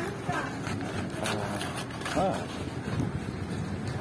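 Steady low rumble of riding along a street, with people's voices nearby; one short voiced call about halfway through.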